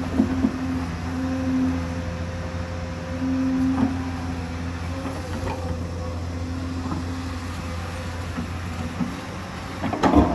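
Hyundai crawler excavator's diesel engine running steadily under load, with a whining tone that rises and drops away as the hydraulics work the arm. Several sharp knocks as the bucket digs and scrapes into soil and stones.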